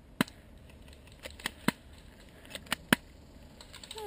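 Airsoft pistol firing about eight shots at uneven intervals: sharp pops of varying strength, the loudest near the start and about three seconds in.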